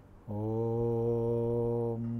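A man's voice chanting, starting about a quarter second in with a slight upward slide into one long, steady held note, as at the opening of a Sanskrit invocation.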